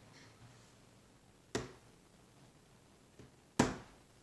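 A toddler's hand slapping a plastic high chair tray twice, about two seconds apart, the second slap louder.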